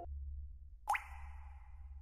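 A single short, upward-sweeping pop sound effect about a second in, its tail fading away over the next second, over a faint steady low hum.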